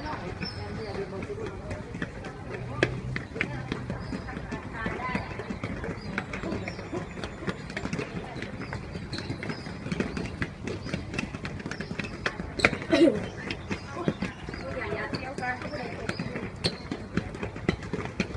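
Many quick footsteps of a group of footballers going down concrete stairs, a dense, uneven patter of footfalls, with voices chattering and calling out now and then, loudest about 13 seconds in.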